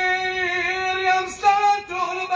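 A young man's voice singing unaccompanied into a microphone, in a chanted recitation. He holds one long, slightly wavering note, breaks off briefly just past halfway, and comes back on a higher note.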